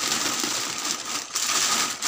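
Plastic rustling and crinkling as handfuls of long beans, cucumbers and other vegetables are pressed down into a plastic-lined bucket, a continuous close-up rustle.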